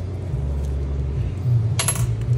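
A single short metallic clink, a small metal part or tool knocking against metal, near the end, over a steady low hum.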